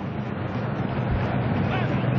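Steady stadium crowd noise from a football match broadcast, with a faint voice near the end.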